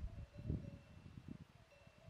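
Faint outdoor background on an open mountain ridge: wind buffeting the microphone in irregular low rumbles, strongest at the start and about half a second in.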